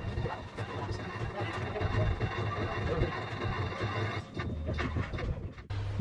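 Outdoor ambient noise with indistinct voices in the background, breaking off abruptly near the end.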